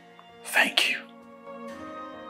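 Soft background music with long held tones, broken about half a second in by two sharp, breathy bursts from a man overcome with emotion, close together and much louder than the music.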